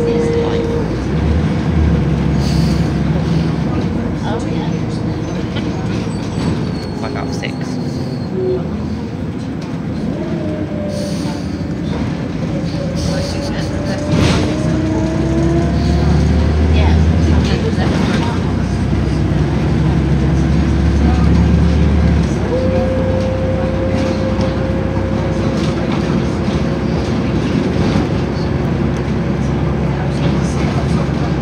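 Volvo B7RLE single-deck bus heard from inside the cabin, its inline-six diesel engine and drivetrain running steadily under way, with a whining engine note that rises and falls as it pulls away and changes gear.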